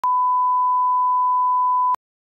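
Broadcast line-up test tone accompanying colour bars: a single steady pure tone held for about two seconds, used as a level reference for the audio channel. It starts and stops abruptly with a faint click at each end.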